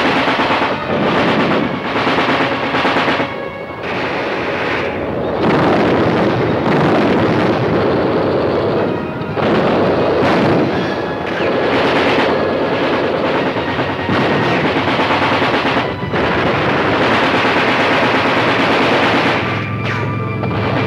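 Battle sound of machine-gun fire and other gunfire, nearly continuous with a few brief lulls, over music.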